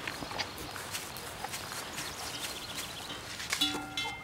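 Faint shuffling steps of a Hérens cow and its handlers on grass, with scattered light clicks and knocks. A brief ringing tone sounds near the end.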